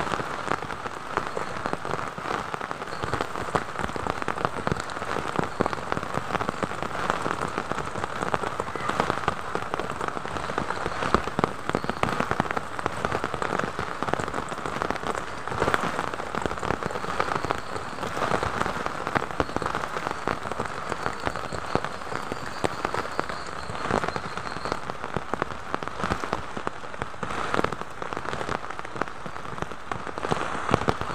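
Heavy rain falling steadily, with a dense spatter of separate drops striking close by.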